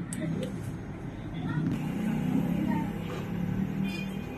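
Sublimation printer running a nozzle-cleaning cycle: a low, steady mechanical hum that grows a little louder about a second and a half in.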